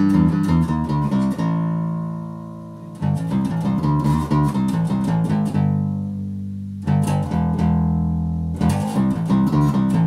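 Schecter Ultra Bass electric bass played with a pick through an amp, with both pickups on. Quick runs of picked notes are broken twice by a held note left to ring and fade, before the picking picks up again.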